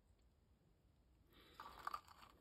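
Near silence: room tone, with a faint, brief rustle or scrape starting a little past halfway.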